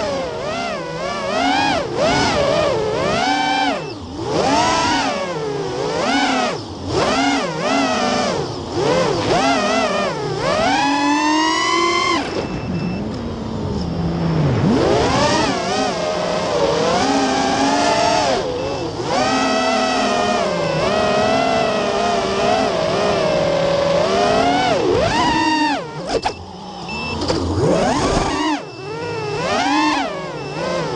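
Armattan Oomph 2206 2300kv brushless motors and propellers of a racing quadcopter whining in flight, the pitch swooping up and down constantly with the throttle. About ten seconds in, one long rising whine as it punches out, then the pitch drops; near the end the sound dips briefly twice as the throttle is chopped.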